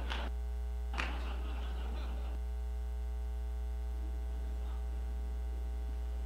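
Steady electrical mains hum through the sound system, with a brief faint scuffing noise about a second in.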